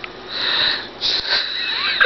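A woman's breathy, wheezing laughter: two gasping bursts of air, a short one about half a second in and a longer one from about a second in.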